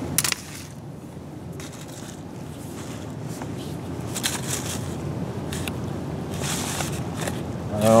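Faint rustling, scraping and scattered light clicks from a snare cable being handled over dry leaves, with a sharp click just after the start, over a steady low background rumble.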